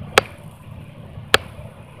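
Two short, sharp clicks about a second apart over a low steady background hum.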